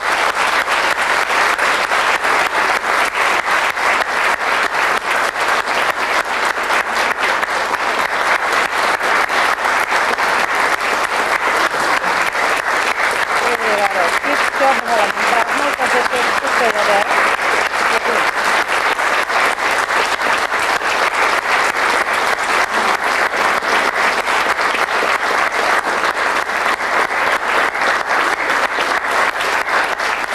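Theatre audience and cast applauding, a long, steady ovation of many hands clapping.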